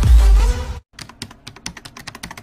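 Electronic intro music with heavy bass beats stops abruptly, then, after a brief gap, a rapid run of computer-keyboard typing clicks begins, used as a sound effect for on-screen text.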